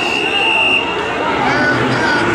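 A referee's whistle gives one short, steady, high blast lasting under a second, over the murmur and shouting of spectators and coaches in a gym.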